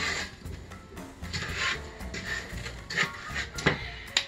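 Wooden spoon scraping and stirring lumps of cold butter and brown sugar around a nonstick saucepan in a few short rubbing strokes, with background music underneath.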